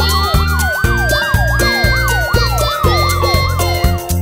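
Cartoon siren sound effect: a fast yelping siren sweeping up and down about three times a second, with a slower wailing tone that rises and then falls. Background music with a steady beat plays under it.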